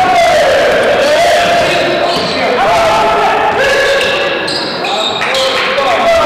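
Basketball being dribbled on a hardwood gym floor during play, with players' shouts echoing in the large hall.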